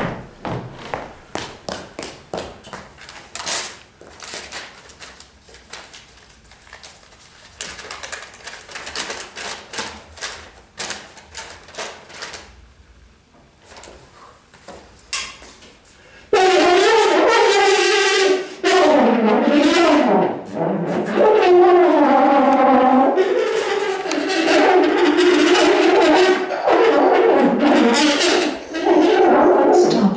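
Solo French horn. For about the first half there are only scattered clicks and short airy noises. About halfway in it breaks into loud held notes that bend and slide in pitch.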